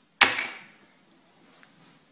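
A single sharp slap on a wooden tabletop, a quarter second in, dying away quickly.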